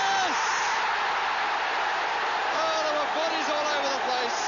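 Football stadium crowd cheering a goal, a dense steady wall of voices, with long drawn-out shouts standing out above it at the start and again in the last second and a half.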